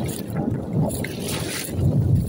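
Wind buffeting the phone's microphone in an uneven low rumble, over small waves washing onto a sandy shore, with a brief hiss of water about a second and a half in.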